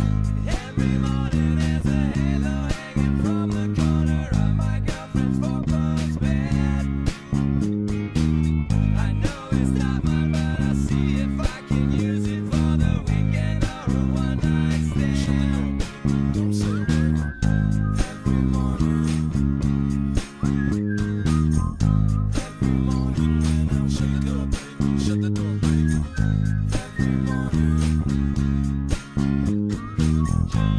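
Fender Jazz Bass electric bass playing a steady, rhythmic bass line along with a pop-rock band recording with guitars.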